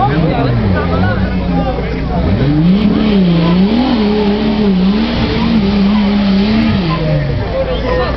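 Off-road 4x4's engine revving under load as it climbs a muddy forest slope: the revs rise and fall, climb sharply a couple of seconds in, are held high with small surges, then drop near the end.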